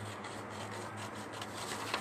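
Scissors cutting through a sheet of printer paper: quiet, continuous scratchy rustling of the blades working along the paper.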